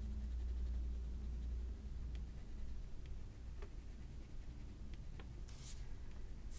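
Faint scratching of a Crayola colour pencil shading on heavy cardstock, with a few light ticks and a short scratchy stroke near the end.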